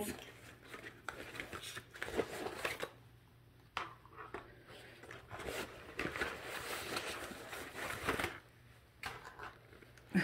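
Lip glosses in clear plastic packages being handled and set down one after another on a cutting mat: irregular plastic rustling with a few soft clicks as the packages are put down.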